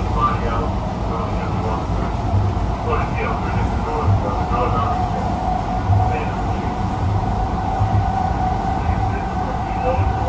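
Interior cab sound of an LA Metro P2550 light rail car running along the track: a steady low rumble of wheels on rail, with a steady whine coming in about halfway through.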